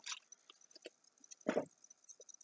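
Faint clicks and rustles of vinyl record sleeves being handled, with one brief voiced sound about one and a half seconds in.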